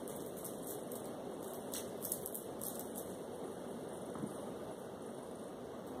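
Faint rustling and a few light clicks from someone moving and handling small objects, over a steady low hiss of room noise.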